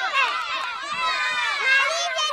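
Many children's voices chattering and calling out at once, overlapping and high-pitched.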